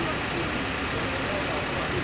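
Steady background noise with a thin, high, continuous whine and faint voices talking in the background; no distinct knocks or clanks stand out.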